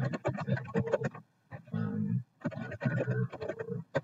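Computer keyboard being typed on: rapid, uneven runs of key clicks with short pauses between them.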